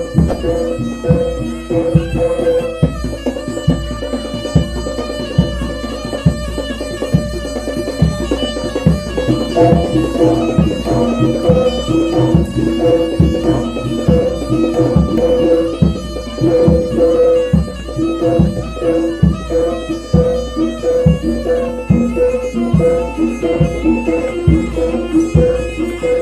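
Jaranan gamelan music: a regular kendang drum beat under a reedy, bagpipe-like slompret shawm melody, held notes over a steady pulse.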